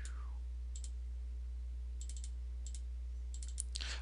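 Light computer mouse clicks, a few scattered and a quick cluster about halfway through, over a steady low electrical hum.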